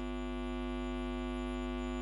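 Steady electrical mains hum in the sound system: an unchanging buzz made of many even tones, with no other sound.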